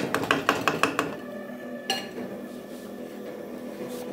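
Wooden spoon knocking against a metal pot: a quick run of about eight sharp taps in the first second, then one more knock about two seconds in.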